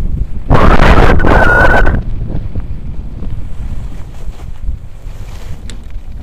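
Wind buffeting the camera microphone while skis slide over packed snow on a surface lift tow. About half a second in a much louder blast of wind noise hits the microphone for about a second and a half, with a brief high squeal inside it, then drops back to a steady rumble.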